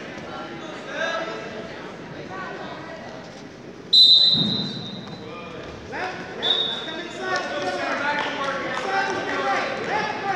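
Referee's whistle: one sharp high-pitched blast lasting about a second, then a shorter blast about two and a half seconds later, restarting the wrestling bout. Voices shout around it.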